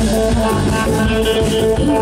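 Live band playing at full volume through a PA: electric guitars, bass guitar and drums in a steady, dense mix of held notes.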